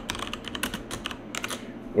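Typing on a computer keyboard: a run of quick key clicks.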